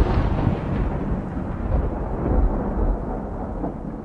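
Thunder rumbling, loud at first and slowly fading away.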